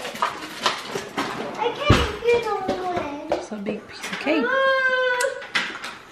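Indistinct voices of a young child and an adult, with a long drawn-out vocal sound a little after the middle and a sharp knock about two seconds in.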